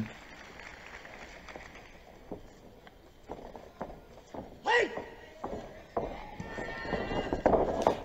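Original fight-broadcast arena sound: a few footfalls and thuds on the ring canvas, a brief shout about five seconds in, and the hall's noise building near the end.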